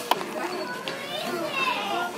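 Indistinct, high-pitched voices talking in the background, with a sharp click just after the start.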